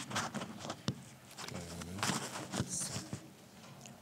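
Handling noise of a clip-on lapel microphone being moved and fastened on a jacket: scattered clicks and knocks with fabric rustling, and a brief faint murmur of voices near the middle.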